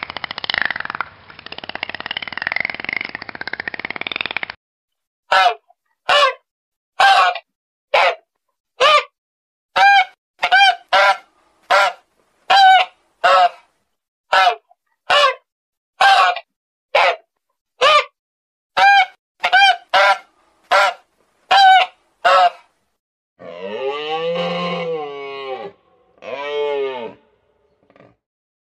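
A domestic waterfowl calling about twenty times in an even series, roughly one short call a second. A rough, noisy sound fills the first four seconds, and two longer, lower animal calls come near the end.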